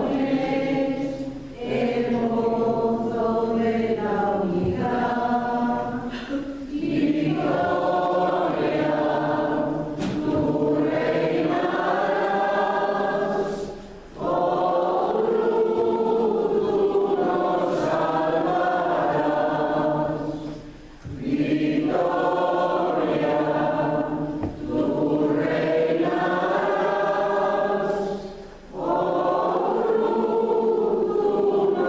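A choir singing slow sacred music in long sustained phrases, with brief pauses between them.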